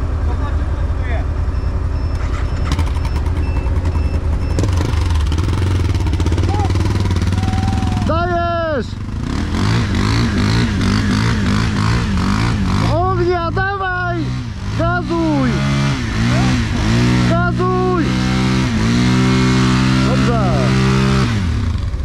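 Quad (ATV) engines running in mud: a steady low engine hum throughout, with an engine note holding at higher revs in the last few seconds. Brief shouted voices break in several times from about eight seconds on.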